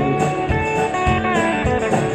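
Live band playing a country-rock song between sung lines: guitars over bass and drums, with held guitar notes and a steady drum beat.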